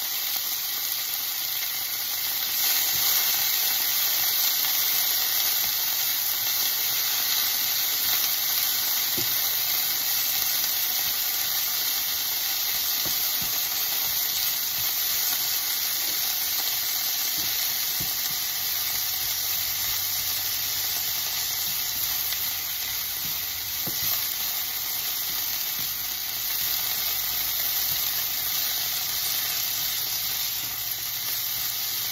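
Shredded cabbage frying in a nonstick frying pan, a steady sizzle and hiss, with soft scrapes of a silicone spatula as it is stirred now and then.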